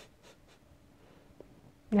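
Near silence: room tone with a few faint short rustles and one small tick. A woman's voice starts near the end.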